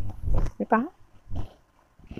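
Silk saree being lifted and spread open, the fabric rustling and bumping against a clip-on microphone, with a short pitched call that dips and rises in pitch under a second in.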